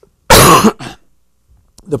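A man coughing: one loud cough followed by a smaller second one just after.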